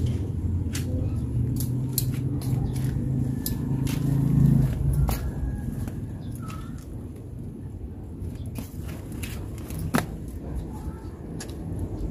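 Scattered sharp clicks and snaps of leafy greens being cut with scissors and handled among the plants, over a low rumble that builds to about four and a half seconds in and then fades.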